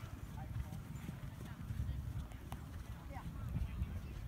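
Wind rumbling on the microphone over faint distant voices and horse hoofbeats, with one sharp click about two and a half seconds in.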